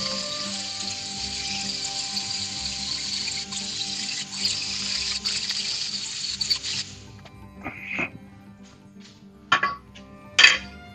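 Angle grinder grinding the edge of a steel C-frame held in a vise, a steady hiss that stops about seven seconds in. A few short metallic knocks follow.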